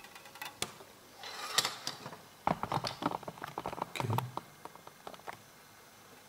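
Handling noises on a tabletop: scattered light clicks, a brief scrape about a second in, then a quick run of small clicks and taps as a thin metal solder-paste stencil and a taped PCB frame are moved about.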